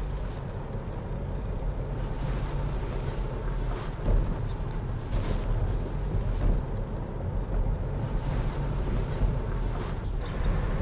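Steady road and wind noise inside a moving car's cabin, mostly a low rumble.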